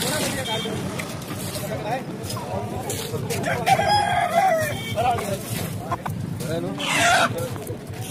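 Rooster crowing over a steady murmur of voices; the clearest crow comes about halfway through, and another loud call near the end.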